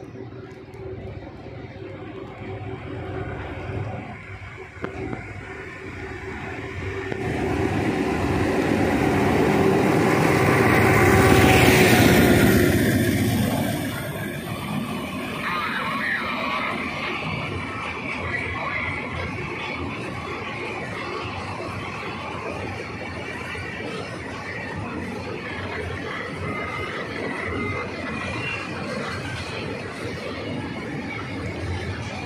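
Freight train approaching and passing: the sound builds to a peak about 11 to 12 seconds in as the locomotive goes by, then settles into the steady running and clatter of flat wagons loaded with steel rails rolling past.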